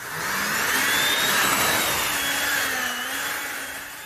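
Radical Rocket RR01 test vehicle's motors running at high power: a loud rushing whine with several wavering pitches. It starts suddenly and begins to fade near the end.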